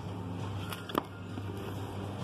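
Shrink-wrapped vinyl LP sleeves being flipped through in a record rack, with two short sharp clicks close together about a second in, over a steady low hum.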